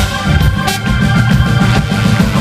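Live soul band jamming, with a drum kit keeping the beat and trombone and trumpet playing together.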